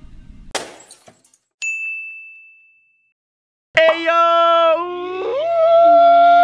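A short crash, then a single bright ding that rings and fades over about a second and a half. After a moment of silence, a loud, drawn-out yell begins near the end, held on a few stepped pitches.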